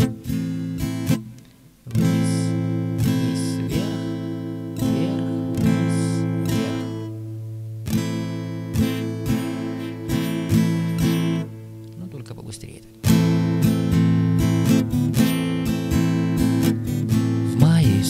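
Acoustic guitar strummed in a steady six-stroke 'шестерка' strumming pattern, the strokes ringing as sustained chords. The playing breaks off briefly at the start and again for about a second and a half a little past the middle, then picks up again.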